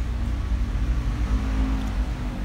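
A low, steady rumble of background noise with a faint even hiss above it.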